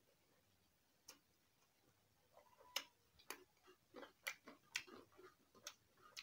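Soft, wet mouth clicks and smacks of chewing a mouthful of rice, about seven irregular clicks with the loudest nearly halfway through.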